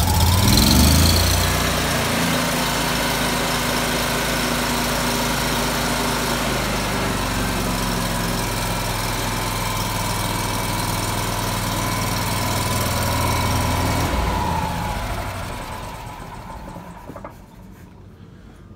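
Miller Trailblazer 325 EFI welder-generator's fuel-injected gasoline engine just after starting, rising in speed in the first second and then running steadily. About 14 seconds in it is cut off and its sound dies away over the next few seconds.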